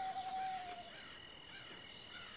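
Countryside ambience: insects and crickets keep up steady high-pitched tones while small birds chirp. At the start a single clear, whistle-like tone is held for just under a second, dropping slightly in pitch at the end.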